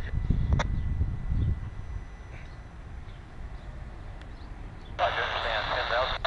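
A low rumble that fades after about a second and a half, then near the end a railroad scanner radio comes on with a voice transmission, sounding thin and band-limited.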